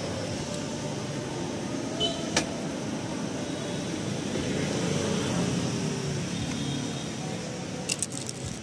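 Steady background noise, like distant traffic or a fan, with one sharp click about two and a half seconds in. A few crisp crackles come at the very end as a piece of grilled rice paper is bitten.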